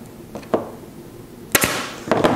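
Staple gun firing once about one and a half seconds in, a sharp snap as a staple is driven through the leather cover into the wooden seat base.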